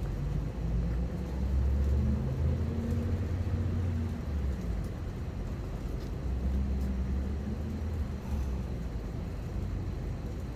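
Low engine rumble of passing road vehicles, swelling twice, about a second in and again past the middle.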